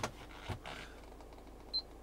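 Two soft clicks about half a second apart, then one short, high electronic beep near the end, from the car's cabin electronics as the sat-nav screen switches to the reversing camera.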